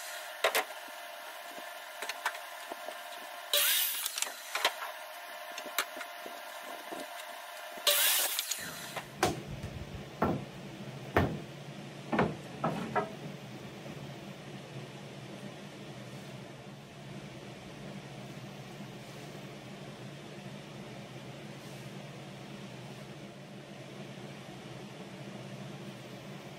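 Workshop sounds: two short, sharp bursts of noise in the first few seconds, then a steady low hum from the shop fans, with several knocks of wooden boards being set down on a workbench between about nine and thirteen seconds in.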